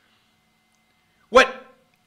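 Near silence with a faint steady hum, then a man says one word, "What", sharply, about a second and a half in.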